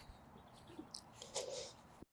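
Quiet pause at a clip-on wireless lavalier mic worn by a walking man: faint breath and rustle, loudest past the middle, after a short click at the very start.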